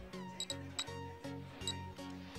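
Background music with a steady bass line, held notes and short, sharp percussive hits, some notes sliding down in pitch.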